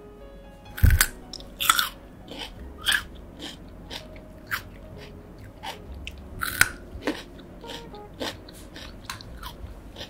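Raw kencur (aromatic ginger) root being bitten and chewed close to a microphone, ASMR-style. There are several sharp crunches in the first three seconds and another loud one past the middle, with quieter chewing between.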